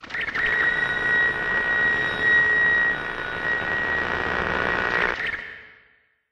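An intro sound effect: a steady noisy rush with a high steady ringing tone running through it, fading out about five seconds in.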